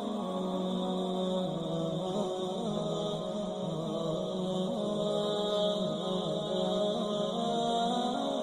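Slow chanting with long held notes that bend and shift gently in pitch, over a sustained drone-like backing.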